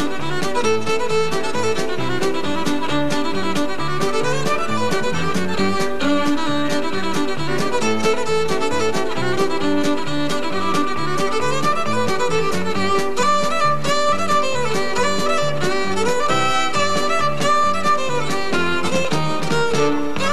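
Fiddle playing an instrumental tune, backed by a country band with a steady drum beat and bass.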